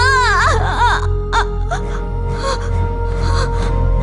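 A woman wailing in anguish, her voice wavering strongly in pitch, over a sustained sad film score. The wail breaks off about a second in, leaving short gasping sobs over the music.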